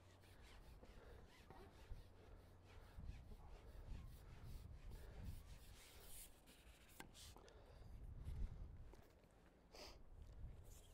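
Near silence: faint, uneven low wind rumble on the microphone, with a single sharp click about seven seconds in.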